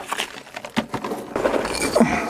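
Irregular scuffs, clicks and scrapes of a person crawling into a small rock cavern: knees, hands and clothing scraping over gravel and rock.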